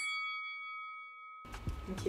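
A bell-like ding sound effect rings out and slowly fades, then cuts off abruptly about a second and a half in. Quiet room sound follows.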